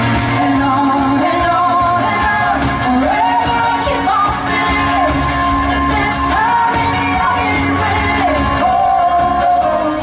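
Live pop band playing with a female lead singer holding long, gliding notes over drums, electric guitars and keyboards, heard through a festival PA from within the crowd.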